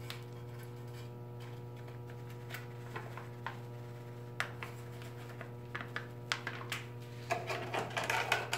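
Steel trowel scooping cement powder from a paper bag into a plastic measuring cup, with scattered light taps and scrapes of the blade against the cup's rim. A steady low hum runs underneath.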